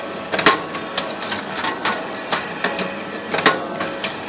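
Tabletop automatic banding machine running a banding cycle on a stack, pulling 20 mm white paper band tight around it, sealing and cutting it: a string of sharp mechanical clicks over a faint steady hum, the loudest clicks about half a second in and near three and a half seconds.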